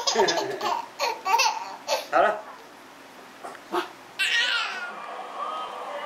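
A baby laughing in short bursts of giggles, then a brief high falling squeal about four seconds in.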